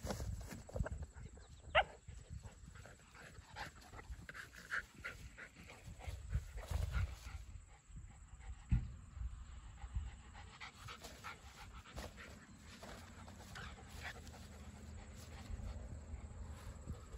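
A dog panting close by, over a low rumble of wind and handling on the microphone, with a short squeak about two seconds in and a thump about nine seconds in.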